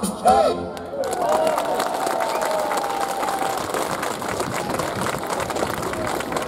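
Audience applauding after a song ends, the clapping setting in about a second in and keeping up steadily.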